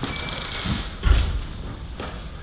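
A dull thump about a second in as a body's weight comes down onto a person lying on a floor mat and cushion, with faint rustling of clothing around it.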